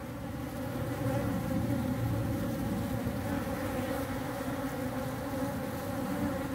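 Many honeybees buzzing around and on an open pitaya flower as they forage: a steady, strong hum.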